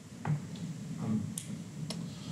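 A few short, sharp clicks and a light knock over a low room hum, with a brief hesitant "um" in between.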